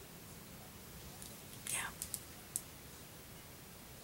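Faint room tone. A little past the middle, a short breathy hiss falling in pitch from a person's breath, then three small mouth clicks.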